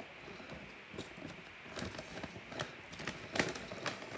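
Brown paper envelope being handled and cut open: a run of irregular paper crinkles and sharp clicks, sparse at first and thicker in the second half, with the loudest snap a little after three seconds in.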